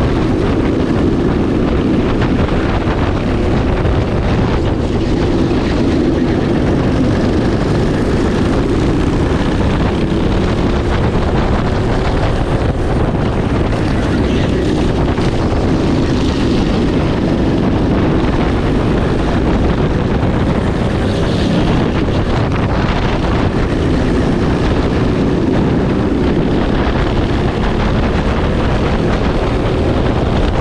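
Racing kart engine running hard, heard from a camera mounted on the kart. The engine note rises and falls with the throttle through the corners, with wind buffeting the microphone.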